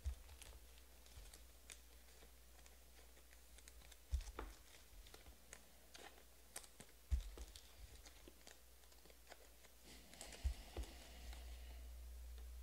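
Faint clicks and light taps of trading cards being handled on a table, with four louder knocks spread through.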